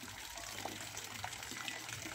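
Faint, steady running water, with a low steady hum underneath.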